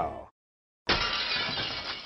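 A sudden shattering crash, like breaking glass, starting abruptly about a second in and dying away over about a second and a half.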